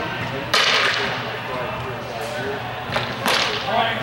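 Steel longswords clashing: one sharp crack about half a second in that rings briefly, then two more strikes close together about three seconds in.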